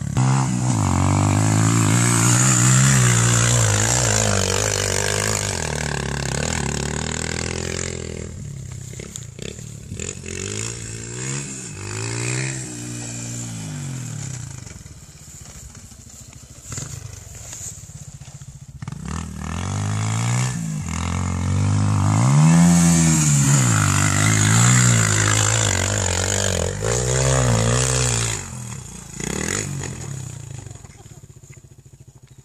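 Dirt bike engine revving up and down hard under load on a steep, soft sand hill climb. It is loud at first, fainter and farther off in the middle, then loud again near the end with several quick rev swells.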